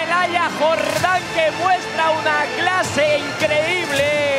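High-pitched vocal sounds in quick rising-and-falling notes, several a second, with music underneath during a goal celebration.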